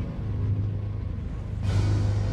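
U-boat diesel engines running with a steady low rumble and throb. About one and a half seconds in, a rushing swell of noise rises over it.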